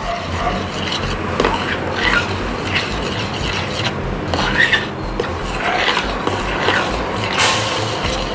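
A metal spoon stirring and scraping a thick cocoa-and-cream mixture around a stainless steel pot, in irregular strokes over a steady low hum. The mixture is stiffening toward a dough-like consistency.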